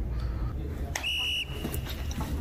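A referee's whistle blown once: a single short, shrill blast on one steady pitch, starting sharply about a second in and lasting about half a second.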